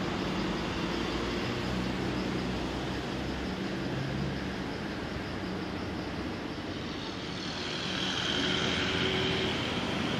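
Steady rumble of road traffic and vehicle engines, with a higher hiss swelling in about three-quarters of the way through.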